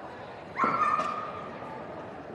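A dog gives a single high-pitched bark about half a second in, held for about half a second.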